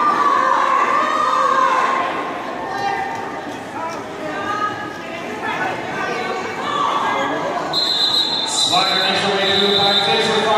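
Several voices of skaters and onlookers calling and chattering, echoing in a large arena hall during roller derby play. Near the end a steady high whistle tone comes in and holds.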